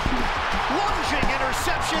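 Football stadium crowd noise with scattered shouting voices, with a faint thump or two and some backing music.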